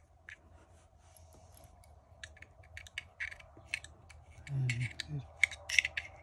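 Small metallic clicks and scratches of a metal pick and fingers working against a Zippo lighter's steel insert, picking through its cotton packing toward the wick. The clicks come sparsely at first and quicken in the second half, with a brief murmur of a man's voice about three-quarters through.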